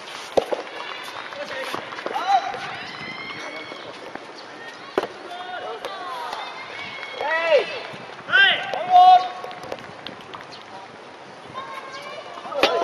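Soft tennis ball struck by rackets with sharp pops, about half a second in and again around five seconds in, during a rally. Loud shouted calls from people on and around the court follow, loudest about seven to nine seconds in.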